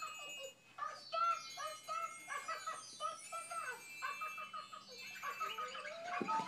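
Children's TV programme music playing from a television: a quick run of short, bell-like notes, ending with a rising, whistle-like glide near the end.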